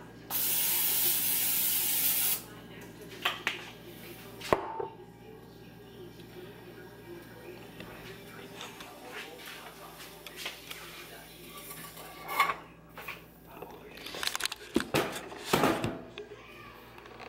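Aerosol olive-oil cooking spray hissing into a frying pan in one steady burst of about two seconds. A few light knocks and clatters of kitchen things follow later.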